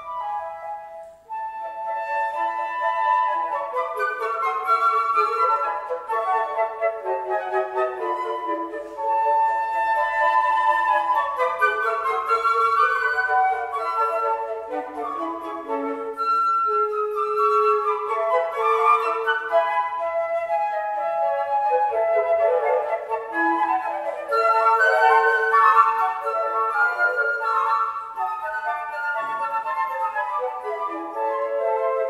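Four concert flutes playing classical chamber music together, several lines of quick notes interweaving, with a brief break in the sound about a second in.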